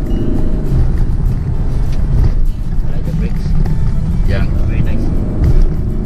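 Lexus LC 500's 5.0-litre V8 running under load as the car drives up a hill, heard from inside the cabin together with road noise as a steady deep sound.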